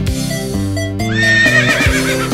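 A horse whinnies about a second in: one wavering, trilling neigh lasting about a second, over background music.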